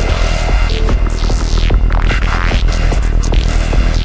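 Psytrance music playing loud, with a heavy steady bass line under repeated sweeping synth swooshes that rise and fall about once a second.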